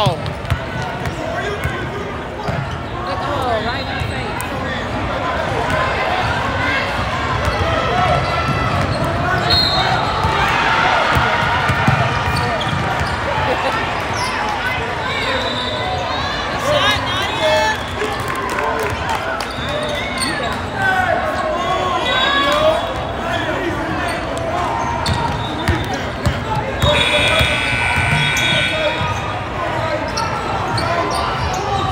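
A basketball being dribbled and bouncing on a gym floor during a game, among overlapping shouts and chatter from players and spectators that echo in the large hall.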